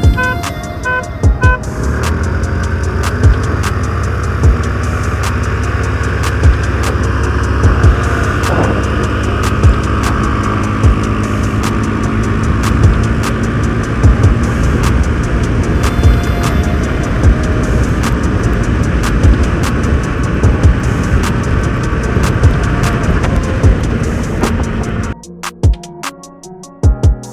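Three short horn beeps as a start signal, then a Suzuki Burgman Street 125 scooter accelerating and running at full throttle with wind and road noise, mixed under background music with a steady beat. The riding noise cuts off about a second before the end.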